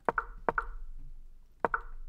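Three short wooden knocks, near the start, about half a second in, and about 1.7 seconds in: an online chess board's piece-move sound effect as moves are stepped through one at a time.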